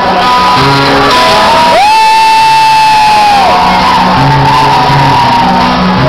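Rock band playing loud in a large hall. About two seconds in, a long high note slides up and is held for about a second and a half over the band.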